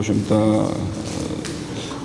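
A man's voice holding a long, drawn-out hesitation sound ("uhh") between phrases, a steady pitch held for over a second.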